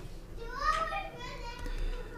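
A young child's voice, faint and in the background, speaking or calling in a high voice that rises and falls, mostly in the first half.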